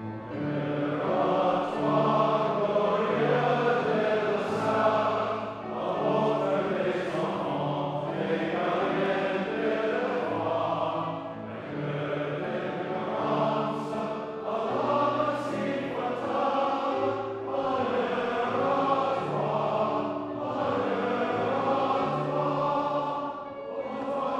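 Voices singing a closing hymn in phrases of a few seconds, over held notes from a keyboard accompaniment.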